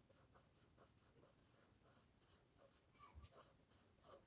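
Very faint scratching of a colouring pen on paper, quick back-and-forth strokes at about four a second as a circle is filled in with colour.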